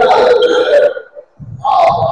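Loud shouting voices in a basketball gym during play: drawn-out yells rather than words. They break off briefly about one and a half seconds in, then start again.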